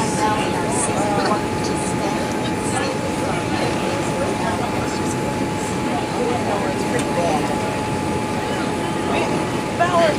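Steady cabin noise inside a Boeing 787-8 airliner on final approach with flaps extended: engines and airflow making an even rush, with a thin steady tone over it. Passengers talk faintly in the background.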